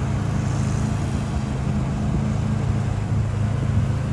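A steady low motor hum holding a few constant low tones, unchanged throughout.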